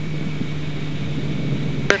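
Steady, muffled low drone of the Extra 300L's engine and propeller heard inside the cockpit in cruise, with a sharp click near the end.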